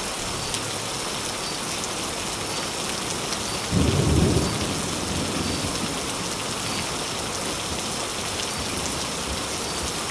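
Steady rain falling, with a low rumble of thunder about four seconds in that swells briefly and fades away over the next couple of seconds.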